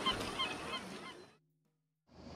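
A string of short, hooked, honk-like bird calls repeating a few times a second over a faint hiss, fading out to silence a little over a second in.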